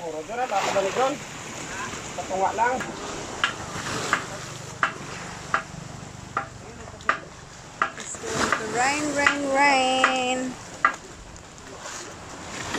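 Small choppy waves washing against the shore under a steady hiss, broken by a run of sharp clicks in the middle. Brief voice fragments come early, and a long held pitched call rises and then holds for about two seconds near the end.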